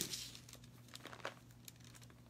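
Thin Bible pages rustling faintly, with a few soft flicks, as they are leafed through to find a passage.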